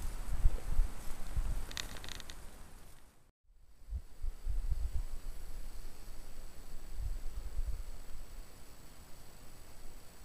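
Low, irregular rumbling and thudding on a handheld camera's microphone, with a short rustle about two seconds in. The sound drops out completely for a moment at about three seconds, then the rumbling resumes.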